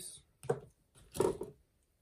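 Two short clicks of hard plastic model parts being handled and worked apart, the second about a second in and louder.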